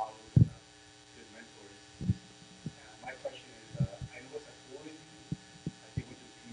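Steady electrical mains hum, broken by a few soft low thumps (the loudest about half a second in) and faint murmuring voices.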